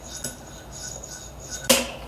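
Fingerboard sliding along a smooth test-mix parking block with a faint, even scrape, then one sharp clack near the end as the board comes down on the wooden tabletop. The board slides freely on the block with no wax.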